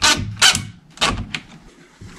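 A few sharp clicks and knocks of hardware at the edge of a wooden interior door while its doorknob and latch are fitted, about four separate hits in two seconds.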